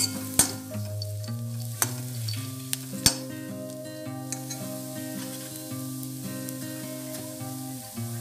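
A steel ladle stirring crumbled bread and peanuts in a kadai with hot oil, scraping and clicking against the pan over a frying sizzle. The sharpest click comes about three seconds in. Soft background music plays underneath.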